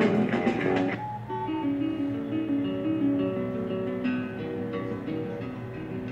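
Guitar music: a busy passage in the first second, then slower plucked notes that ring out one after another.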